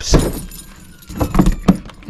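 Front locker lid of a Swift Basecamp 2 caravan shut with a single loud thud at the start. It is followed by a few light clicks and the jangle of keys as the latch is worked.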